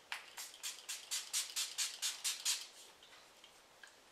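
Makeup Forever Mist & Fix setting spray pumped onto the face in rapid short sprays, about five a second, stopping about two and a half seconds in.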